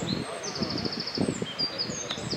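Small songbird singing high chirping phrases, with a quick trill of about ten even notes in the middle, over low rustling.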